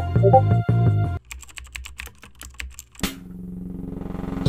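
Computer keyboard typing: a quick run of clicks lasting about two seconds, a chat message being typed. Before it, background music with a steady beat cuts off about a second in; after it, a low droning tone swells.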